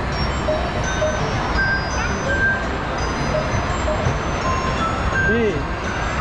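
Mall kiddie train moving along, a steady rumble under scattered tinkling music notes, with voices nearby.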